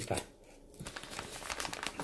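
Clear plastic pocket-letter sleeve and paper craft pieces being handled, crinkling and rustling, with a run of quick crackles from about a second in.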